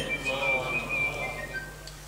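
A high whistling tone, held for about a second and then dropping in a few short steps to lower notes.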